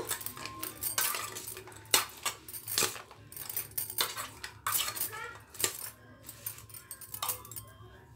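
A metal spoon clinking and scraping against a stainless-steel bowl as fried corn kernels are tossed with spices, in irregular strokes that thin out near the end.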